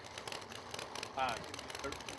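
Faint outdoor background noise from the crowd and track around the staging lanes, with a scatter of small clicks and no engine running. A man's voice gives a brief "uh" just over a second in.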